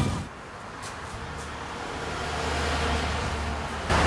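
Low, steady rumble of a motor vehicle, growing gradually louder, with a few faint clicks in the first second and a half.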